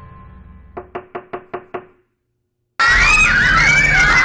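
Six quick knocks, about five a second, as on a door, over the fading tail of music. After a short silence, loud music starts near the end.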